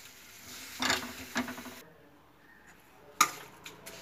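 A metal spoon scraping and knocking against a kadhai as the pickle is stirred. There are a few short scrapes about a second in, a quiet pause, then one sharp knock near the end.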